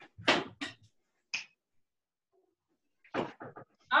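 A dog giving a few short, sharp barks in the first second and a half, heard over a video call.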